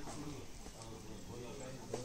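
Faint voices of people talking in the background, with a small knock near the end.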